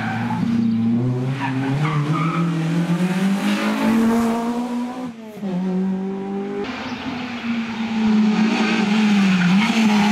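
Honda Civic Type R rally car's four-cylinder engine at racing revs, its pitch climbing and falling as it changes gear and brakes. There is a short drop in revs about five seconds in, and the sound changes abruptly shortly after.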